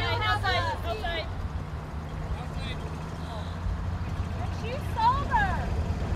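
Voices talking at the start and a loud, high exclamation about five seconds in, over the steady low hum of a golf cart running as it drives off. The hum's pitch steps up about a second and a half in.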